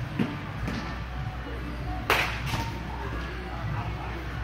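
A wooden baseball bat hits a pitched ball once, a sharp crack about two seconds in, with a shorter second hit right after as the ball strikes the cage.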